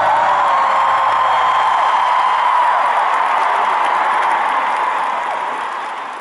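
A large stadium crowd cheering, screaming and applauding as the song ends, the sound fading out over the last couple of seconds.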